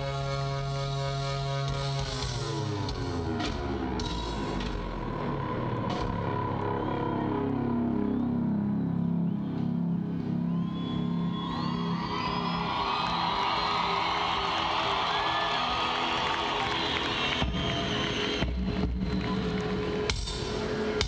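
A live band's instrumental intro through the stage PA: held keyboard chords give way to a stepping pitched line in the low range. From about ten seconds in, the crowd cheers and whistles over the music.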